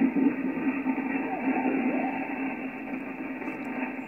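Single-sideband voices from an Icom IC-7600 HF transceiver's speaker: several stations faint and garbled over each other in a pile-up, under a steady low tone and hiss. The sound is thin and narrow, passed through the QRM Eliminator and BHI digital noise reduction.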